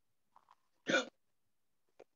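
A single short vocal sound from a person about a second in, brief and abrupt, in an otherwise quiet pause.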